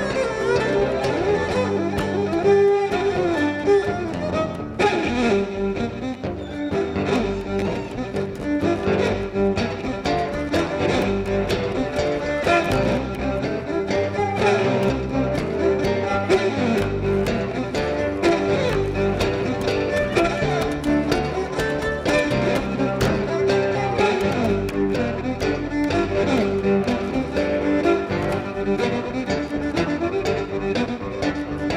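Live instrumental blues jam: an amplified violin plays a sliding lead line over strummed acoustic guitars and bass.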